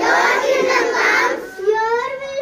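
Children singing a prayer together, a girl's voice carrying the lead, with a brief pause for breath about one and a half seconds in.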